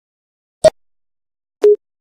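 A short sharp click, then about a second later a brief, steady, mid-pitched electronic beep.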